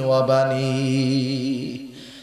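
A man's voice chanting in the melodic delivery of a sermon, holding one long steady note that fades away shortly before the end.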